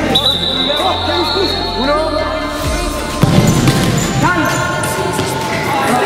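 Players' raised voices and ball thuds echoing in an indoor futsal hall, with a louder knock about three seconds in. Music with a deep bass plays underneath, and a steady high tone sounds for about the first two seconds.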